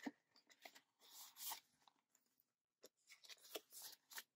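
Faint handling of paper and plastic binder pages and cards: a soft rustling swish about a second in, then a few light clicks and taps near the end.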